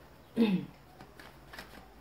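A deck of tarot cards shuffled by hand, giving a run of small, irregular card flicks and slaps. About half a second in, a brief vocal sound from the shuffler is the loudest thing.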